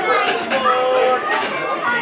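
Several raised voices shouting and calling over one another during football play, from players and onlookers at pitchside.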